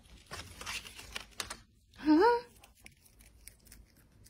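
Light rustling and crinkling as a pet hamster is picked up and handled, then one short rising vocal sound, like a questioning 'hm?', about two seconds in.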